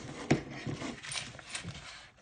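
A clear plastic zip pouch of loose coins being handled, with a sharp click about a third of a second in and lighter clinks and rustling after it.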